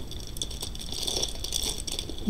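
Strands of beaded necklaces, including a multi-strand turquoise-coloured plastic bead necklace, clicking and rattling lightly against one another as fingers move through the pile.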